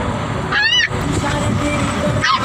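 A dog in a crate giving one short, high whine that rises and falls, about half a second in, over a steady low rumble.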